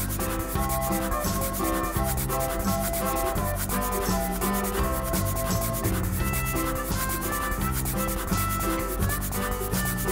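Pentel N850 permanent marker nib rubbing and scratching across paper in repeated strokes as outlines are traced over and thickened, with a light background tune playing underneath.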